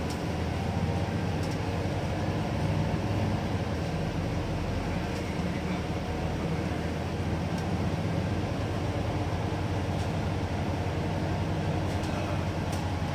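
Double-decker bus under way, heard from inside its upper deck: a steady low engine drone with road noise and a few faint clicks from cabin rattles.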